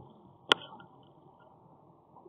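A single sharp click or tap about half a second in, followed by a brief ringing, over a faint steady background hiss.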